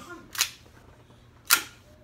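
Two sharp clacks about a second apart, the second louder, from the metal parts of a Carbon8 M45 CQP CO2 gas-blowback pistol as it is handled and readied to fire.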